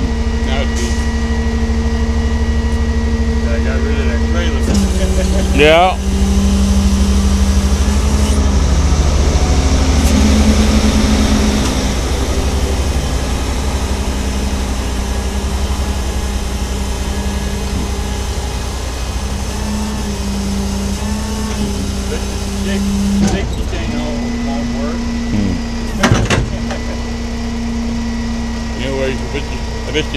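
A motor vehicle engine running steadily at idle close by. Its pitch drops slightly about five seconds in and rises back near the end, as its speed changes.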